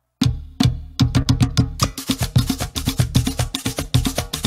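Live percussion of drum and hand-held cowbell struck with sticks: a few separate strokes start just after the beginning, then from about a second in a fast, steady rhythm.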